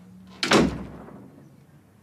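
A door being shut firmly: one loud bang about half a second in, fading quickly.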